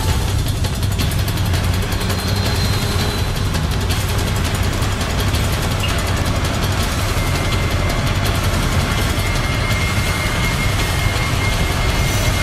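Motorcycle and car engines running in road traffic, a steady low drone.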